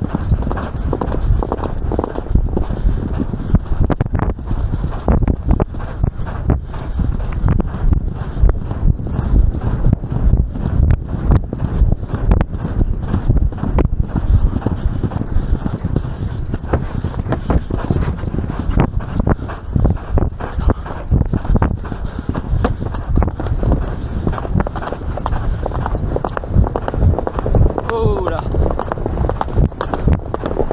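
Grey horse galloping cross-country, heard from the saddle: a fast, steady run of hoofbeats on turf and dirt, with a low rumble underneath.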